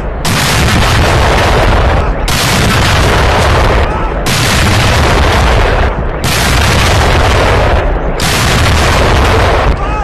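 A battery of towed field guns firing a ceremonial salute, one shot about every two seconds, five in all. Each blast is loud enough to overload the recording and rolls on for nearly two seconds before the next.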